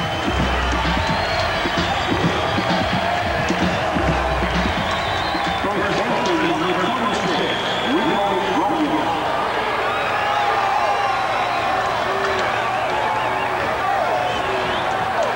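Ballpark crowd cheering a home run: a steady wash of many voices shouting together, with no let-up.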